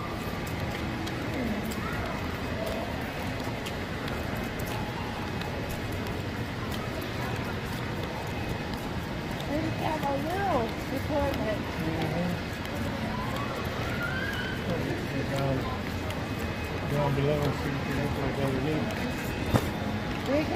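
Handling noise from a phone that is recording while being carried, rubbing against clothing with scattered small clicks over a steady background noise. Voices of people talking come through now and then, most clearly about halfway through and near the end.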